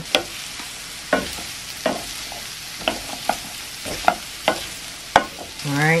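Diced apples sizzling in butter in a frying pan while a wooden spoon stirs them, with a steady frying hiss and about eight irregular knocks and scrapes of the spoon against the pan.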